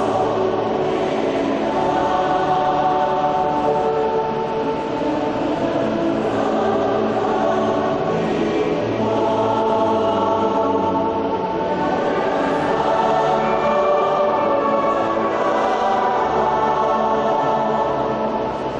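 Choir singing a slow, sustained hymn with a concert band accompanying, clarinets among the instruments playing.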